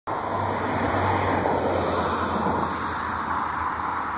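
Steady rushing noise with a low hum underneath, like passing road traffic, easing slightly toward the end.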